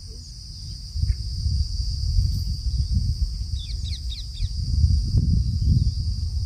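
Outdoor ambience dominated by wind rumbling on the microphone, over a steady high-pitched drone of insects. A quick run of bird chirps comes about four seconds in.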